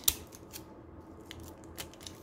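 Handling noise from a flexible resin coaster holder and a roll of tape: one sharp click just after the start, then a few faint light ticks.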